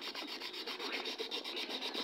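Faint, steady rubbing and scraping as the parts of an electric table fan, its motor and plastic housing, are handled during repair.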